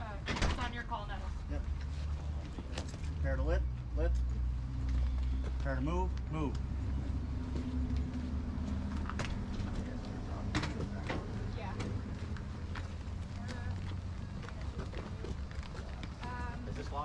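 Indistinct voices over a low steady rumble, with scattered clicks and knocks while a litter is carried by hand.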